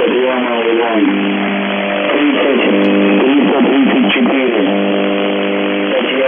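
UVB-76 'The Buzzer' on 4625 kHz, received over shortwave radio: a steady low buzz in static. A wavering, warbling sound lies over the buzz during the first second and again from about two to four and a half seconds in.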